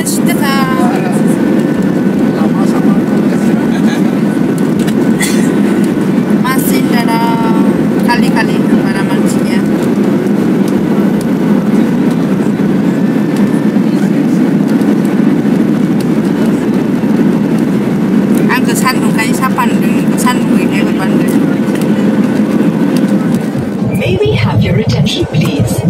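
Steady, loud, low cabin noise of a Boeing 737-8 MAX airliner, the engine and airflow noise heard from a passenger seat, with a faint steady hum. Voices break in briefly a few times.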